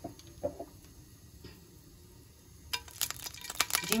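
Cumin seeds crackling in a little hot oil in a non-stick frying pan: a few faint clicks at first, then a quick run of small pops and clicks from near the three-second mark.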